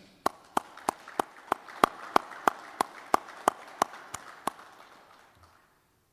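Small audience applauding: one pair of hands clapping sharply and evenly about three times a second over softer scattered clapping, dying away about five seconds in.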